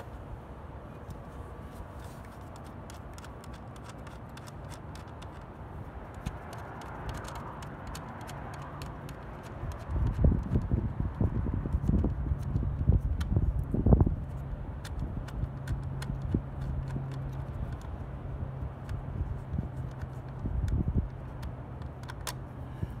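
Dull knocks and bumps from hands working at a car door mirror's mount as its bolts are taken off by hand. They come in a cluster about halfway through, the loudest near the middle, over a low steady hum.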